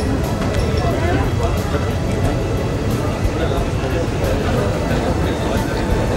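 Crowd of many people talking at once, with music playing underneath and a steady low rumble.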